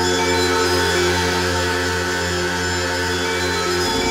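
Eurorack modular synthesizers playing an electronic drone: many steady tones layered over a sustained low bass note, which shifts pitch just before the end.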